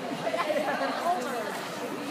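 Background chatter: several people talking indistinctly over one another.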